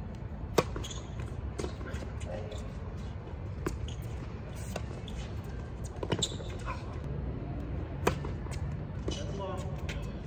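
Tennis balls struck by rackets during a doubles rally: a sharp pop about half a second in as the serve is hit, then further hits and bounces every one to two seconds, heard over a steady low rumble.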